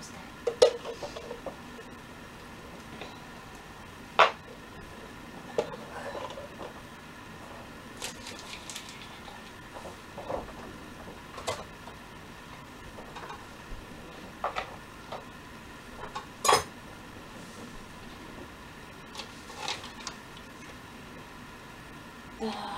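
Kitchen dishes and utensils being handled: scattered sharp clinks and knocks every second or two, a few standing out louder, over a faint steady hum.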